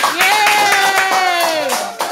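Hand clapping, with a voice holding one long cheering note over it that drops in pitch near the end.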